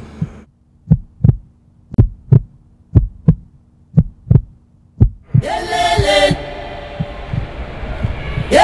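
Heartbeat sound effect: paired lub-dub thumps about once a second over a low hum, four pairs and a last beat. About five seconds in a loud pitched blast with a rising start cuts in and lasts nearly a second.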